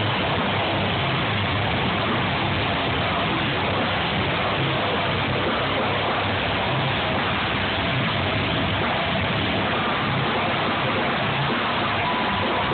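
A live band with electric guitars, keyboard and vocals playing at full volume, heard through a phone microphone that turns it into a dense, steady wash of noise.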